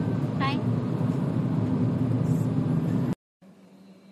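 Steady low rumble of a car's cabin noise, with a brief high falling sound about half a second in. The rumble cuts off suddenly just after three seconds, leaving a faint steady hum.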